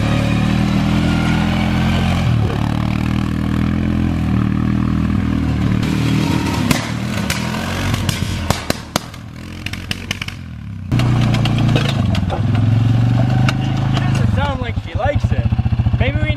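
Suzuki KingQuad ATV's single-cylinder engine running under throttle as it lurches along on square wheels, with clattering knocks from the bouncing machine. The engine sound drops away for a couple of seconds past the middle, comes back abruptly, and settles into an evenly pulsing idle near the end.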